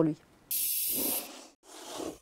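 A sudden burst of hiss lasting under a second, then a second, softer rush of noise that cuts off abruptly.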